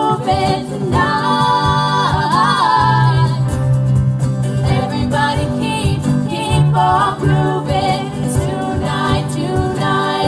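A live acoustic pop band playing: two strummed acoustic guitars, a Casio Privia digital piano and a cajon keeping a steady beat, with female voices singing over them.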